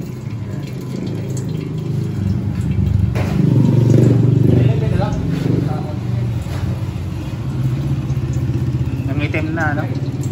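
A vehicle engine running steadily, growing louder about three to five seconds in and then easing back.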